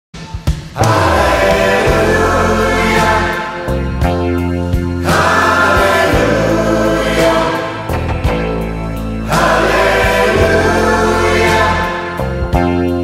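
Choral music: a choir singing held chords over a low accompaniment, the sound swelling anew about every four seconds.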